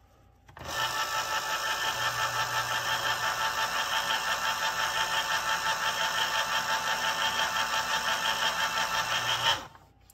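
Hamilton Beach Smooth Touch electric can opener running as it cuts around a can: a steady motor whir with a fast, even pulsing as the can turns. It starts about half a second in and cuts off just before the end.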